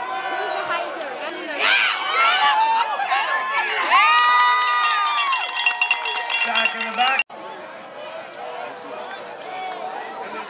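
Football crowd in the stands cheering and yelling as a play ends in a tackle, with one long held note in the middle, then a fast, even metallic rattle for about two seconds. The sound cuts off abruptly about seven seconds in, leaving quieter crowd chatter.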